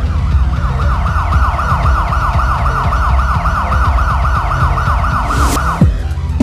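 Film title music: a heavy pulsing bass beat under a fast, repeating siren-like wail, about five falling sweeps a second. Near the end a rising whoosh swells up and the wail cuts off.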